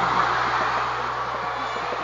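A large crowd of girls in a big hall responding at once: a loud wash of clapping and many voices that starts suddenly and runs on steadily.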